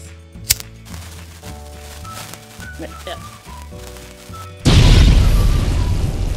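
Dynamite explosion sound effect: a sudden, loud blast near the end that slowly dies away, over light background music. A single sharp click sounds about half a second in.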